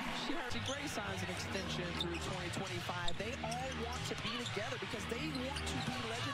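Basketball dribbled and bouncing on a hardwood court, a run of short knocks over a steady arena crowd bed, with a TV commentator talking underneath.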